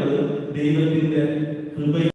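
A priest's voice over a church microphone and loudspeakers, intoned in long, held, chant-like tones.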